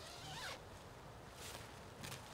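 Tent door zipper being pulled open from inside in a quick stroke lasting about half a second, then a shorter zip burst near the end.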